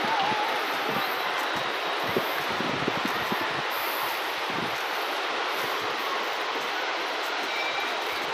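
Steady, even wash of ocean surf on a beach, with low gusts of wind on the microphone.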